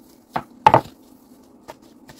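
Wooden rolling pin knocking down onto a wooden board, two sharp knocks about a third of a second apart, the second louder, then a faint tick, over a faint steady low hum.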